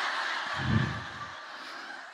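Audience laughing after a punchline, a mass of overlapping laughter with one louder low laugh about a second in, then fading.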